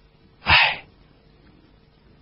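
One short, sharp burst of breath from the audiobook narrator about half a second in, between sentences.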